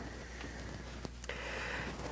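Quiet workshop room tone with a steady low hum, and faint rustling of electrical cable and thermocouple wire being handled, slightly louder in the second half.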